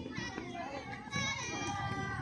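Children's voices calling and shouting across a football pitch, several overlapping at once at a moderate level.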